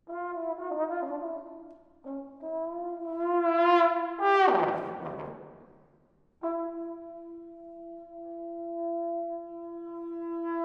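Solo trombone playing slow, whining notes: a wavering note, then a lower note that steps up and swells louder, then a sudden jump that slides down in pitch and fades out about halfway through. A long, steady note then enters and slowly swells.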